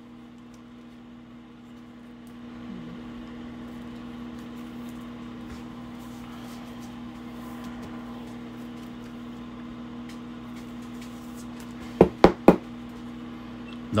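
Three quick sharp knocks about twelve seconds in, a sleeved trading card in a rigid plastic top loader being tapped against the desk to seat it, over a steady low hum.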